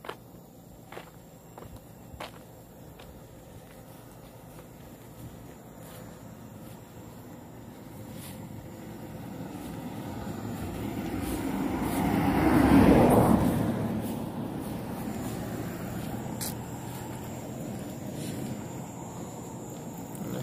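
A motor vehicle passing on a road: its sound builds slowly over several seconds, peaks a little past halfway, then eases off to a lower, steady level.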